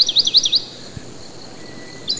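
Bird chirping: a quick run of short, high chirps, each falling in pitch, about eight a second, that stops about half a second in, leaving a faint hiss.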